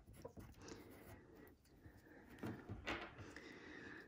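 Near silence: faint pencil scratching on paper as a name is finished off, then a couple of soft handling noises a little past halfway.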